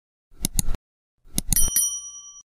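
Subscribe-button animation sound effect: a quick double mouse click, then about a second later more clicks and a short, bright bell ding that keeps ringing.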